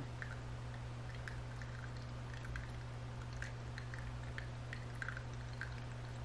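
Quiet room tone: a steady low hum with a scattering of faint, light ticks.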